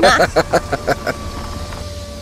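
Car driving along, a steady low engine and road rumble heard as a background sound effect, with a spoken line ending about half a second in.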